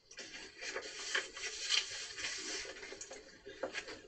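Paperback book being handled and a page turned: irregular papery rustling with a few soft knocks.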